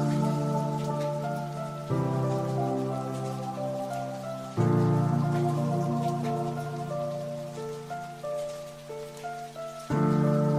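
Background music: sustained soft chords that change about two seconds in and again just before the halfway point, with a slow line of held notes above them and a faint rain-like hiss mixed in.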